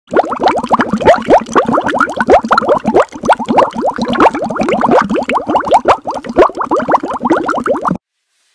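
Intro sound effect laid over the title card: a fast, continuous run of short rising bloops, several a second, like bubbling, cutting off suddenly at the end.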